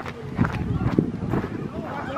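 Footsteps on a gravel beach: a few irregular crunching steps.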